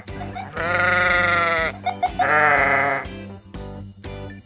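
A faulty cartoon ambulance siren loudspeaker sounding like a bleating sheep instead of a siren: two long, wavering bleats, over background music.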